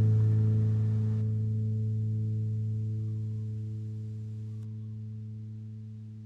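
The song's last chord held on a musical instrument, ringing with no new notes and fading away steadily.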